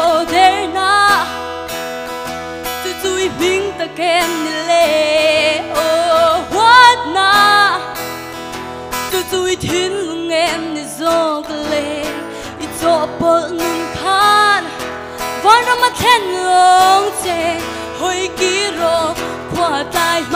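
A young woman singing solo into a microphone, holding notes with wide vibrato, accompanied by an acoustic guitar.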